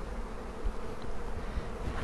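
A colony of European honeybees buzzing steadily in an opened brood box.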